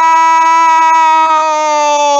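A male football commentator's long drawn-out shout, one vowel held loud at a steady pitch, reacting to a shot on goal that does not go in.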